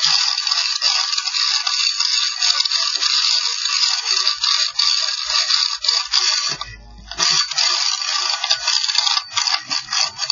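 Continuous dense scraping and rattling from a chimney inspection camera rubbing against the inside of the flue. It pauses briefly about two-thirds of the way through with a low bump, then carries on.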